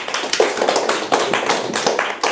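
A small audience clapping, many quick irregular claps.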